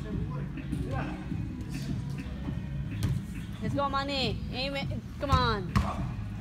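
Players shouting to each other during an indoor soccer game, in a large hall over a steady low hum, with the loudest calls coming in the second half. There is a single sharp knock about three seconds in.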